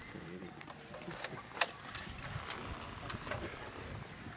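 Faint background voices with a few small sharp clicks and knocks from handling, the sharpest about one and a half seconds in.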